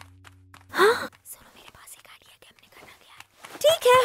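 A cartoon character's short, breathy vocal sound with a rising pitch about a second in, after a low held background-music tone stops. A spoken word follows near the end.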